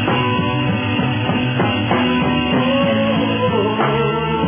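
Live pop band playing an instrumental passage, with no singing.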